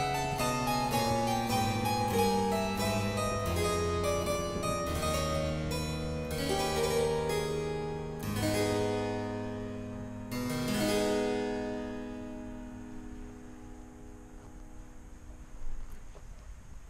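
Background music on a solo keyboard instrument: quick plucked-sounding notes, then two long held chords about halfway through that slowly die away, leaving only a faint hiss near the end.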